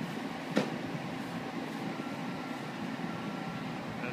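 Steady outdoor background hum of traffic or machinery, with one short click about half a second in and a faint steady whine in the second half.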